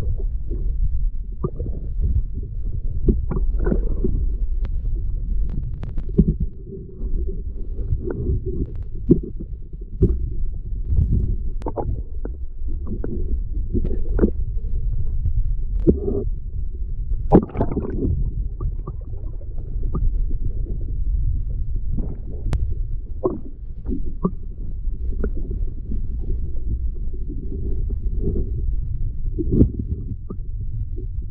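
Muffled, continuous deep rumble of water moving against an underwater camera's waterproof housing, with scattered small clicks and knocks.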